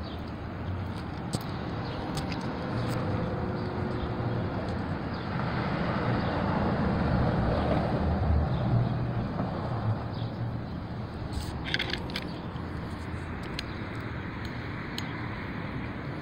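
Ford Mustang's 3.7-litre V6 idling through a Flowmaster axle-back exhaust: a steady low drone that grows louder for a few seconds around the middle.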